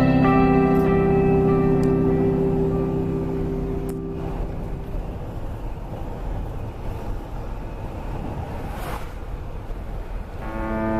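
Sustained background music fades out over the first four seconds, leaving the steady road and engine noise of a moving car heard from inside the cabin.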